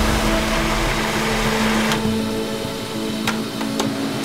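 Electric blender running, puréeing canned fruit into a thick liquid. About halfway through the sound turns duller and lower.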